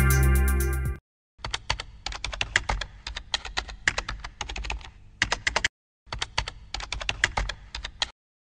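Music ending about a second in, then rapid typing on a computer keyboard in two runs of keystrokes with a short pause between them.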